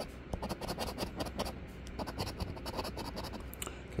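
A coin scraping the coating off a paper scratch-off lottery ticket in quick, repeated strokes.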